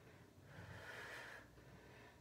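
Near silence with one faint breath, a soft exhale lasting about a second in the middle, from a woman holding a balance exercise on the mat.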